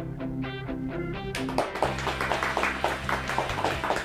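Television show opening theme music: a repeating picked-note figure, joined about a second and a half in by drums and a fuller band.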